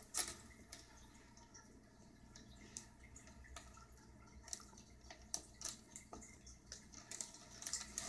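Faint aquarium water sounds: irregular small drips and clicks over a low steady hum.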